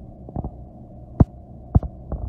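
City bus interior: a low, throbbing rumble, with a few sharp knocks on top. There is one loud knock just over a second in and a quick pair near the end.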